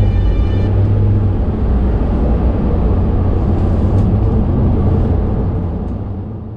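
Steady engine and road rumble of a van, heard from inside its cargo area, beginning to fade near the end.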